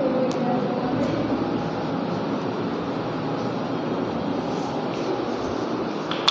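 Steady rushing background noise with no speech, with a whiteboard duster rubbing across the board at the start.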